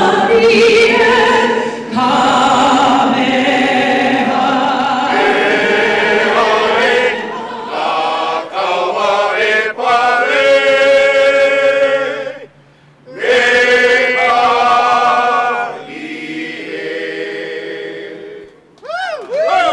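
A group of voices singing together in long held notes. The singing breaks off for a moment about two-thirds of the way through, then goes on more quietly.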